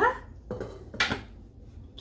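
A pot lid is set down onto a cooking pot on the stove: a soft knock about half a second in, then a sharper clink about a second in with a short ring, after a brief sung "la".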